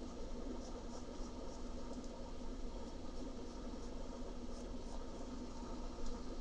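Faint scratching of a Derwent soft colored pencil drawing short strokes on paper, over a low steady room hum.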